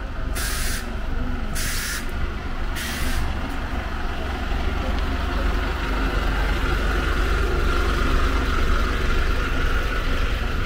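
Double-decker bus alongside with its engine running in a steady low rumble, letting out several short hisses of compressed air in the first three seconds. A steady whine grows louder in the second half.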